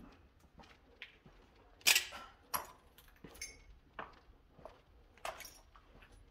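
Footsteps crunching over debris on a hard floor at a walking pace, about one step every two-thirds of a second, the sharpest crunch about two seconds in.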